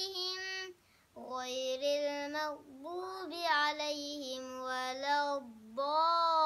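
A boy's voice reciting the Quran in a melodic, chanted style, holding long drawn-out notes that bend and ornament in pitch, with a short breath about a second in.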